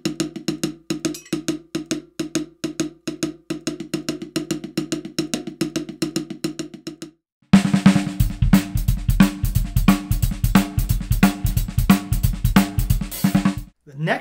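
Drumsticks play a fast, even triplet hand pattern on a snare drum. After a short break about seven seconds in, a full drum kit comes in louder with bass drum, snare and cymbals playing a groove, and it stops just before the end.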